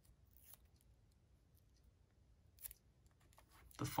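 Faint handling noise of cellophane-wrapped playing-card boxes being held and shifted in the fingers: a couple of brief light crinkles or taps, about half a second in and again past two and a half seconds, over near silence.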